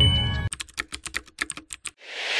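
Music cuts off about a quarter of the way in, followed by a computer-keyboard typing sound effect: a quick run of sharp key clicks, about eight a second, stopping just before the end, where a swelling whoosh begins.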